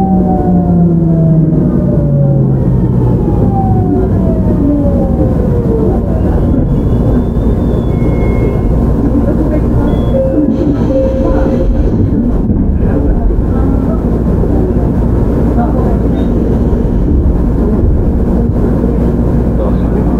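Hitachi GTO-VVVF inverter and traction motors of a JR Shikoku 7000 series train heard from on board: a whine of several tones sliding down in pitch over the first few seconds, which gives way to the steady rumble of the wheels running on the rails.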